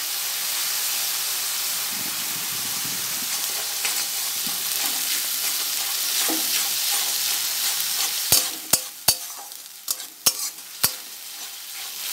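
Spice paste frying in oil in an aluminium kadai with a steady sizzle while a steel spatula stirs it. In the last third the sizzle dies down and the spatula knocks and scrapes against the pan about six times.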